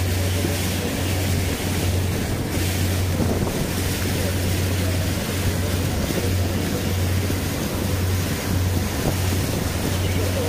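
A motor launch running steadily at speed: a constant low engine drone, with water rushing along the hull and wind buffeting the microphone.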